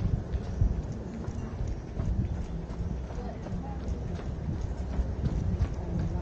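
Running footsteps on a concrete lane in a steady rhythm, over a steady low rumble.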